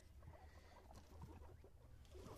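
Faint rustling and light patter of guinea pigs moving about on dirt and cut grass, over a low steady hum.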